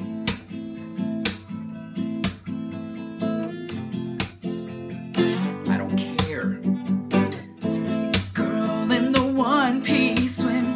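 Acoustic guitar strummed as a song intro: single full strums about once a second, then from about five seconds in a quicker, choppy strumming rhythm.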